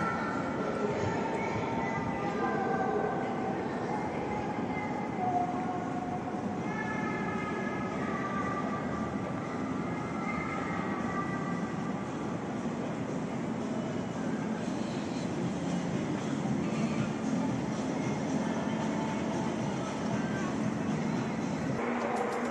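Passenger train running, a steady rumble with faint wavering whining tones during the first half.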